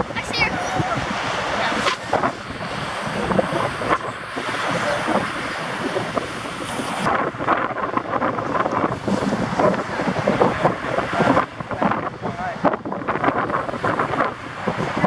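Wind buffeting the camera microphone in uneven gusts over the steady wash of ocean surf.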